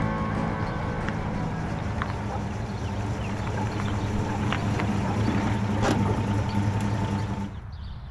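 An old American convertible's engine running steadily at low revs as the car rolls in and sits, with a low rumble and a few faint clicks. It cuts off suddenly shortly before the end.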